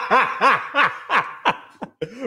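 A person laughing: a run of short pitched 'ha' syllables, about three to four a second, that grow quieter and shorter and trail off toward the end.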